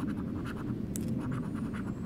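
A coin scratching the coating off a paper lottery scratch card in rapid short strokes.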